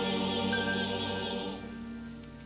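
A church congregation singing a hymn together, holding a long chord that dies away about one and a half seconds in.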